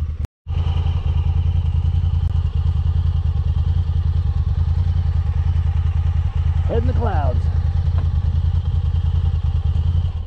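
Off-road vehicle engine idling steadily at one even pitch with a rapid pulsing beat, cutting off abruptly at the end. A brief voice sounds about seven seconds in.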